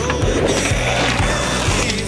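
Stunt-scooter wheels rolling across a skatepark ramp, a steady rough rolling noise, over background music with a steady beat.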